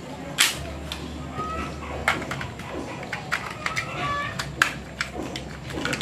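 Sharp plastic clicks and knocks as a toy Beyblade launcher and its grip are handled and fitted together, a handful of separate clicks spread over a few seconds, over a steady low hum.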